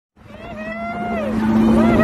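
Two long, high held vocal notes, each sliding down at its end, over a steady low drone, fading in from silence.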